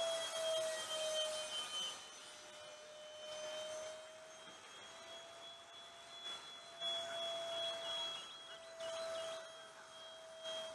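Whine of a Dynam Me 262 RC jet's electric ducted fans in flight overhead: one steady high tone that sags slightly in pitch over the first two seconds, then holds. It is loudest at first, drops after about two seconds, and swells again twice later on.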